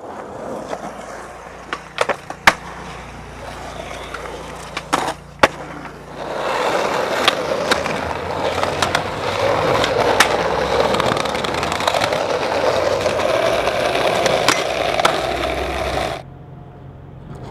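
Skateboard wheels rolling on concrete, with sharp clacks of the board striking the ground. About six seconds in the rolling gets louder and keeps going, with more clacks, until it cuts off suddenly at the end.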